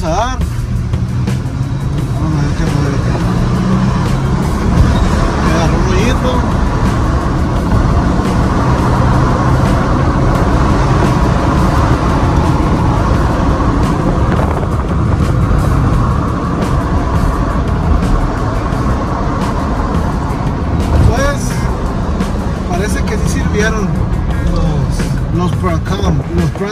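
Jeep Gladiator driving on a city street, heard from inside the cabin: steady engine and road noise, with music playing over it.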